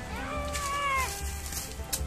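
A single high, drawn-out call about a second long, rising sharply at the start, holding, then dropping off, over steady background music.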